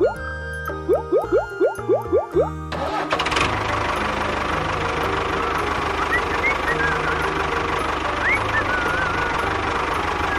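Bouncy plucked music with quick rising notes, cut off about three seconds in by a tractor engine starting up and then running steadily, with a few faint high chirps over it.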